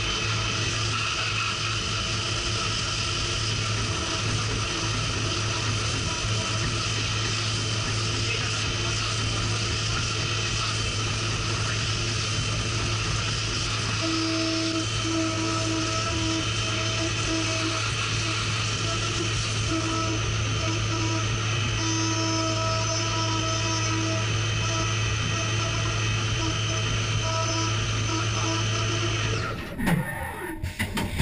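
Haas Super Mini Mill 2 CNC mill cutting aluminium under flood coolant: a steady spindle-and-cut whine over the hiss of coolant spray and chips, with a lower tone that comes and goes from about halfway through. It cuts off abruptly just before the end.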